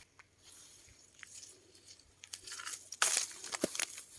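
Apple tree leaves and twigs rustling as a hand pushes into the branches to pick an apple, with a few sharp cracks; soft rustling at first, then a loud burst for about a second near the end.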